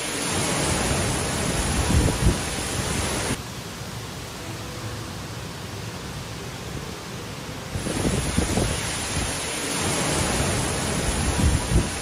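Typhoon wind and heavy rain: a steady rush of noise with gusts buffeting the microphone. It drops to a quieter, even hiss for about four seconds in the middle, then the gusts return.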